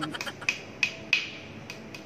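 Fingers flicking the carbon-fibre frame of a 2020 Giant Trinity Advanced Pro 2 time-trial bike, a string of sharp, irregular ticks, each with a brief ring. Buyers use this flick test to tell a carbon frame from an aluminium one by its sound.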